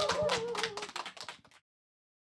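Applause from a small audience, separate claps that thin out and stop about one and a half seconds in.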